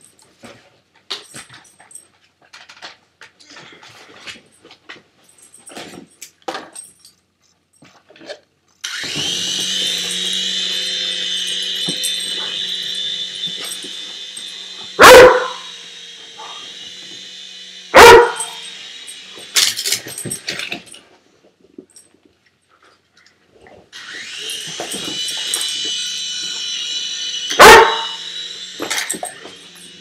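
A Weimaraner puppy barking at a small remote-control toy helicopter: three loud single barks several seconds apart. Between them the helicopter's small electric motor and rotor give a steady whine that cuts in suddenly about nine seconds in, fades away, and starts again near the end.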